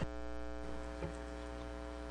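Steady electrical hum made of several even, unchanging tones, with one faint click about a second in.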